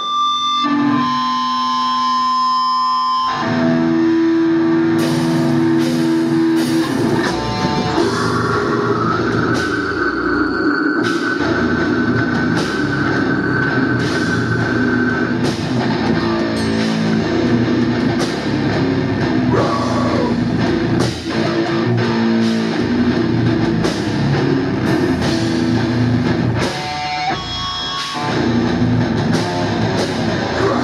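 Live heavy metal band playing: distorted electric guitars and drum kit. It opens with a few seconds of held guitar notes, the drums come in hard about five seconds in with a steady pounding beat, and there is a short break near the end.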